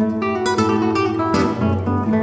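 Two nylon-string classical guitars playing a lively duet of quickly changing plucked notes and chords, with a sharp, bright chord attack about one and a half seconds in.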